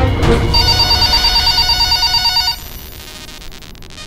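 An electronic telephone ring sound effect over the end of a theme-music sting. A warbling trill starts about half a second in and cuts off after about two seconds, leaving a quieter fading tail.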